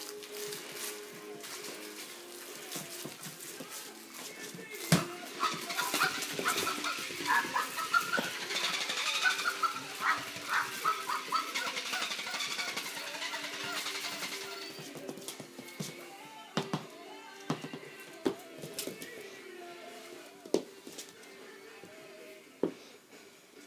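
Background music playing throughout, with a border collie puppy's play on a tile floor over it: scattered sharp knocks and clicks from toys and paws, the loudest about five seconds in and several more in the last third.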